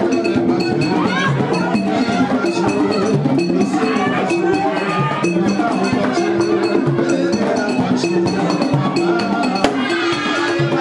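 Live Haitian Vodou ceremonial music: singing over drums and struck percussion keeping a steady, repeating beat. A single sharp click stands out near the end.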